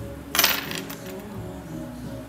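Dior Caro bag's gold-tone metal chain strap jingling briefly, its links clinking together about a third of a second in, over background music.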